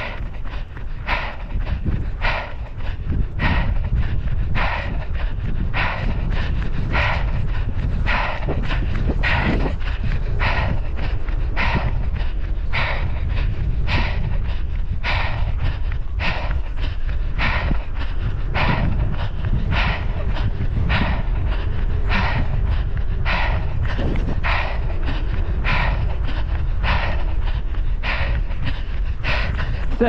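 Heavy rhythmic panting of a runner close to the microphone, just under two breaths a second, over a steady low rumble.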